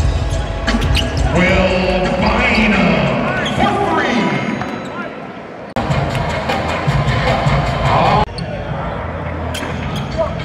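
Arena game sound: a basketball bouncing on the hardwood court among sharp knocks and ticks, with indistinct voices and music in the hall. The sound changes abruptly twice, once past the middle and again near the end.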